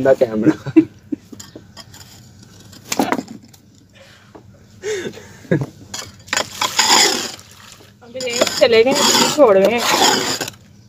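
A few scrapes and knocks of a small trowel in dry soil, then water poured from a small container onto a heap of dry red soil for about two seconds, as soil is wetted for mixing into mud. A voice follows near the end.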